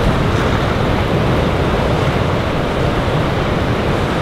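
Steady wind noise on the microphone over the constant wash of surf breaking on an offshore reef.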